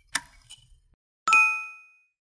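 Subscribe-button sound effects: a sharp click just after the start and a fainter click after it. Just over a second in, a single bell-like ding rings out and fades away within about half a second.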